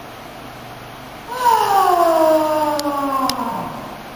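A high-pitched voice drawing out one long cry that falls steadily in pitch, starting about a second in and lasting about two and a half seconds. Two faint clicks sound near its end.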